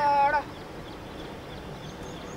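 A loud, high-pitched drawn-out cry, rising at its start and dropping away about half a second in, followed by steady low background noise.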